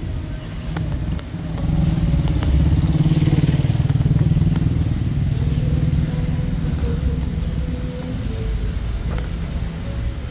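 Motor vehicle engine running close by in street traffic, a low hum that grows louder about two seconds in and eases off after about six seconds.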